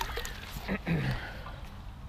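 A brief voiced sound from a person, twice, falling in pitch, over a steady low rumble on the microphone.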